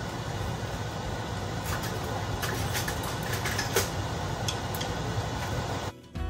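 A steady low mechanical hum, with a few light clicks and clinks of kitchenware about two seconds in and again near four seconds.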